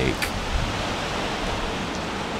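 Steady, even rushing noise of wind and sea at the shoreline, with no other distinct event.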